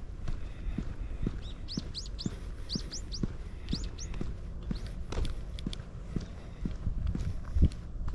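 A person's walking footsteps, about two a second, with a bird giving a quick series of about ten short, high chirps from about a second and a half in until about four seconds in.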